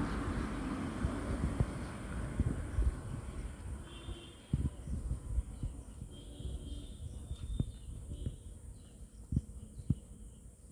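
Quiet outdoor background with a low rumble and scattered soft knocks. A faint high-pitched call comes twice in the middle.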